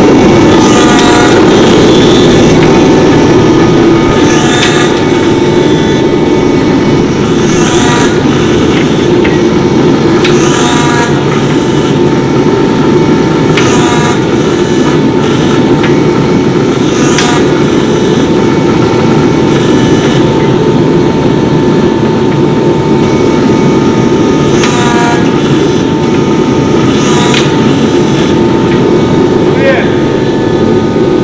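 A 17-ton hydraulic press runs with a loud, steady mechanical drone and a whine, its dies pressing and cutting through a hot damascus billet. Short higher-pitched sounds come every few seconds.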